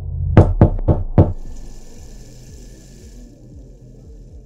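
Four quick, loud knocks close together, followed by a bathroom faucet running as a faint steady hiss for a couple of seconds.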